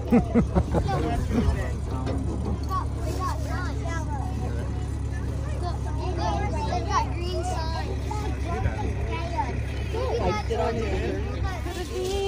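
Hayride on a hay wagon: a steady low rumble of the moving wagon under the chatter of other riders, with a run of loud knocks in the first second and a half.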